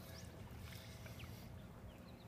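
Quiet ambience out on the water beside a small boat: a faint, steady low rumble with a few faint short chirps.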